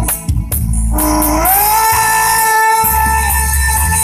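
A singer slides up into one long held note over loud backing music with a heavy bass line.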